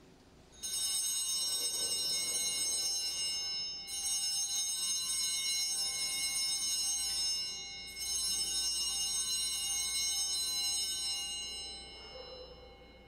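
Altar bells (a cluster of small Sanctus bells) shaken by an altar server three times, each ring of bright high tones sustained a few seconds before the next. They mark the elevation of the chalice at the consecration of the wine during Mass.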